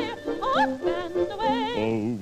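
Operetta-style singing with a heavy, warbling vibrato and quick upward swoops in pitch, over musical accompaniment.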